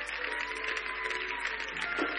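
Congregation applauding, a dense patter of many hands clapping, over background music with held notes.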